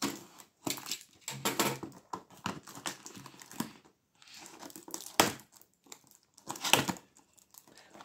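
Cardboard box being opened: a box cutter slitting packing tape, then tape and clear plastic wrap crinkling and tearing as the taped flap is peeled back, in an irregular run of crackles and rips with two sharper snaps in the second half.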